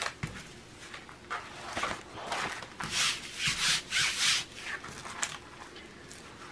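Hands rubbing and sliding over a plastic-film-covered diamond painting canvas, making irregular rustling swishes that are loudest through the middle.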